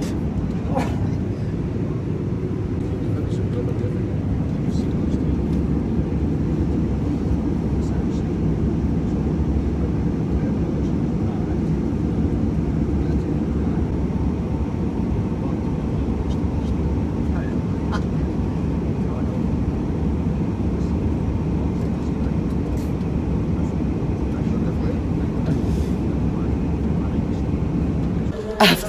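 Steady low drone of a jet airliner's cabin in flight, engine and airflow noise holding an even level throughout.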